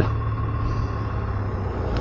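Kawasaki W650 air-cooled parallel-twin motorcycle engine running at a steady cruise, a low even hum mixed with road and wind noise.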